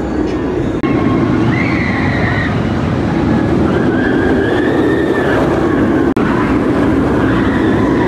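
Banshee, a Bolliger & Mabillard inverted steel roller coaster, with its train running loudly along the track in a steady rumble. Several high, held tones of about a second each sit over the rumble, and there is a brief dropout about six seconds in.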